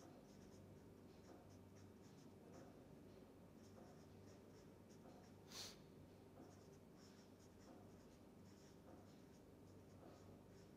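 Faint squeak and scratch of a felt-tip marker writing on paper: a string of short strokes, with one louder stroke about halfway through.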